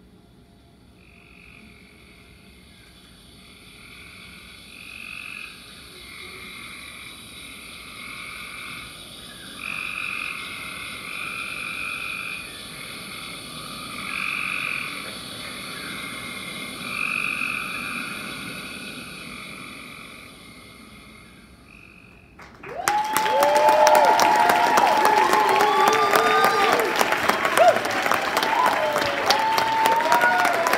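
A chorus of frog-like croaking calls, repeated in short pulses and building in loudness. About three-quarters of the way through, an audience breaks into loud applause with whoops and cheers.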